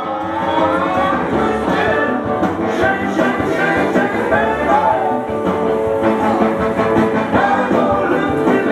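Rock and roll song with a singing voice and guitar, coming up in level in the first second and then steady.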